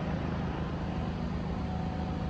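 A motor running steadily with a continuous low hum.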